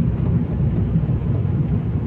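Steady low rumble of a car driving, heard from inside its cabin, with faint tyre noise on the wet road.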